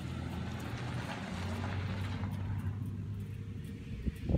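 2015 Harley-Davidson Street XG500's liquid-cooled 500 cc V-twin idling steadily through its 2-into-1 exhaust, fitted with an aftermarket Firebrand 4-inch Loose Cannon muffler.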